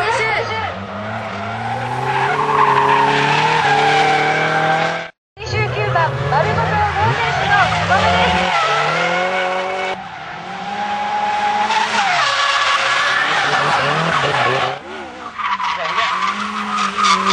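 Drift cars sliding through corners, engines revving up and down under heavy throttle while the tyres squeal. The sound breaks off completely for a moment about five seconds in and shifts again near ten and fifteen seconds as one run gives way to the next.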